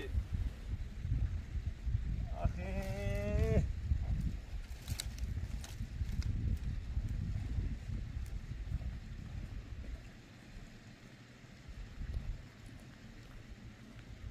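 A single drawn-out bleat, about a second long and quavering, about two and a half seconds in. It is heard over a low wind rumble on the microphone that dies down in the second half.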